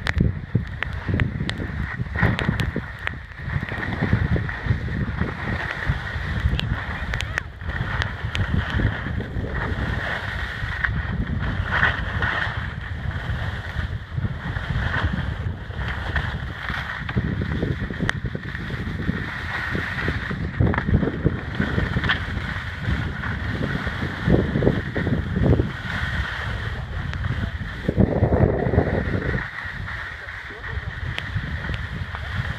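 Wind buffeting the microphone during a fast run down a snow slope, mixed with the continuous scrape of edges carving the snow.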